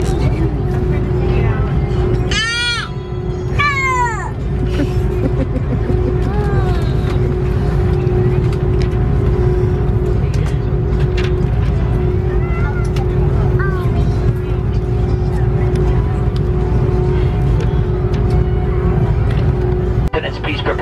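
Airliner cabin noise at the gate: a steady low rumble of the air-conditioning with a constant hum. A young child squeals twice, high-pitched, a couple of seconds in, with quieter voices after.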